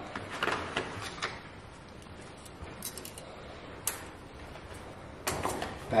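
Light handling sounds from a hard-shell fillet knife carrying case as its contents are lifted out: a few soft clicks and knocks in the first second, a single sharp click near the middle, and a brief rustle and clatter near the end.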